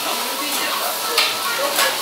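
Restaurant dining-room background: a steady hiss under faint background voices. Two brief clinks of tableware come about a second in and near the end.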